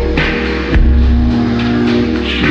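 Vaporwave music: sustained, layered chords over a heavy bass, with a single drum hit about three quarters of a second in.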